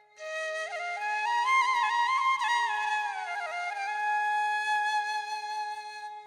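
Background music: a flute plays a slow, sliding melody over a steady held drone note, coming in just after a brief silence.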